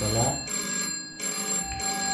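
A telephone ringing in repeated pulses with short breaks between them.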